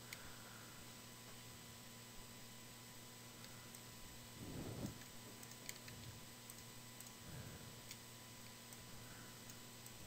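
Near silence with a few faint, sharp computer mouse and keyboard clicks, over a steady faint electrical hum. A soft, slightly louder noise comes about halfway through.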